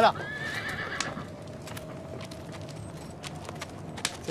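A horse whinnies once just after the start, a high call that rises and then holds for about a second, with scattered light hoof knocks around it.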